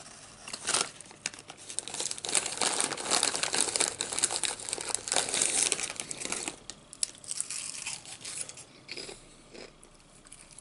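Foil-lined Lay's potato chip bag crinkling loudly as it is picked up and a hand rummages inside it for chips. The crackling is densest in the middle and thins to scattered crinkles near the end.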